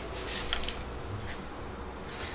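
Faint handling noise: a few small clicks and rustles in the first second as a pressure-washer lance wand and trigger gun are threaded together, over a low steady hum.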